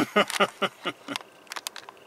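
A string of irregular small plastic clicks and knocks as wiring connectors are unplugged from the Ford Maverick's HVAC temperature control panel.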